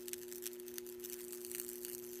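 Steady low electrical hum from the energised electrode setup, with faint irregular crackling ticks from the electrode working in the aluminum oxide powder.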